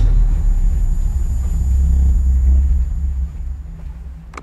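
A deep bass rumble from a promo video's soundtrack, the kind of cinematic swell that closes an advert. It builds to a peak about two and a half seconds in and then fades away, with a faint steady high whine above it.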